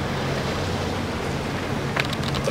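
Steady wind and sea noise, an even rush, with a low steady hum underneath.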